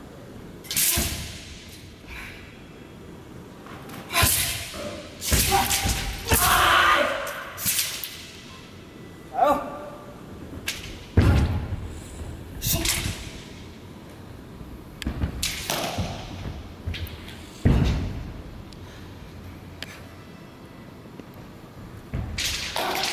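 Southern broadsword (nandao) routine: a string of thuds from feet stamping and landing on a carpeted floor, mixed with swishes of the broadsword blade cutting through the air, at irregular intervals with short pauses between moves.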